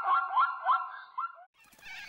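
Zebra call: a rapid run of repeated high barking notes, about four a second, that stops suddenly about one and a half seconds in. A faint hiss follows.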